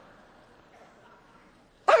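Quiet room hiss, then near the end a woman's sudden loud, high-pitched shouted exclamation.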